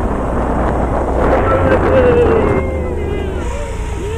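Wind rumbling on the microphone. Over it, a drawn-out wavering tone slowly falls in pitch.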